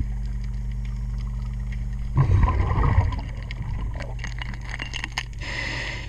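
Scuba regulator breathing underwater over a steady low hum. About two seconds in, an exhale sends out a rumbling gush of bubbles for about a second, followed by crackling and popping as they rise. Near the end comes the short hiss of the next inhale.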